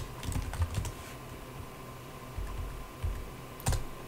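Keystrokes on a computer keyboard: a quick run of typing, a pause, then more typing and one sharper key press near the end.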